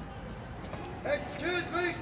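A loud shouted voice, a cadet calling out a formal drill report in drawn-out, sing-song syllables, starting about a second in over steady outdoor background noise.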